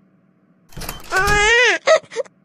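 A whiny wail in a high-pitched voice, starting about a second in: the pitch rises and then falls over about half a second, followed by a short second cry near the end.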